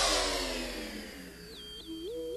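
Synthesized spaceship travel sound effect: a noisy whoosh fading out while a cluster of tones glides down in pitch, then warbling electronic bleeps that step up and down begin near the end.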